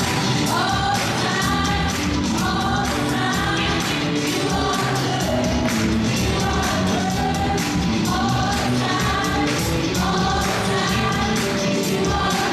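Live worship band playing a gospel song: several women sing together in harmony over electric guitar, bass, piano and a drum kit keeping a steady beat.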